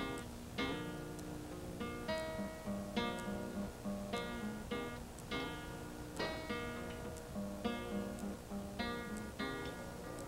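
Solo acoustic guitar playing a song's instrumental intro: chords strummed in a steady rhythm, about two a second, over a pulsing bass note.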